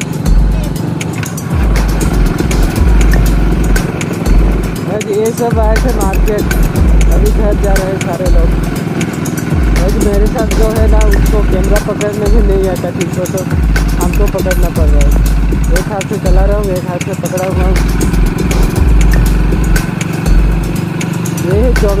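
Motorcycle engine running steadily while riding, with wind buffeting the microphone in gusts.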